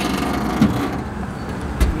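Steady outdoor road traffic noise, a low rumble with a hiss over it. A soft thud comes about half a second in, and a sharp knock near the end.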